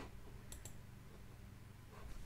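Two faint computer mouse clicks about half a second in, over a steady low room hum.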